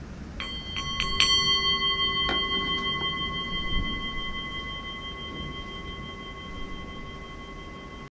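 Bell-like metal chime tones, struck about four times in quick succession in the first second or so and once more about two seconds in; several high clear tones ring on together and slowly fade.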